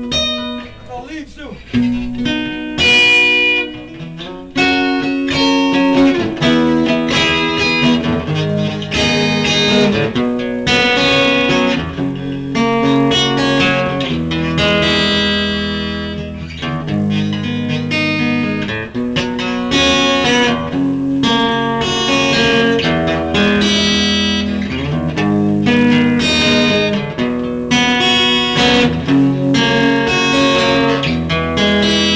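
Electric guitar played solo: a run of sustained notes and chords that change every second or so, with a short lull in the first few seconds.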